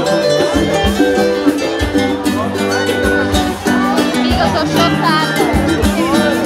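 Loud party music with a steady beat and held instrumental notes, with voices over it in the second half.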